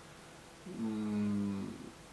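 A man's steady, low hesitation hum between sentences, held at one pitch for about a second near the middle.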